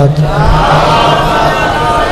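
A large congregation chanting the salawat together, the blessing on the Prophet Muhammad and his family, loud and in unison, in answer to a call for loud salawat.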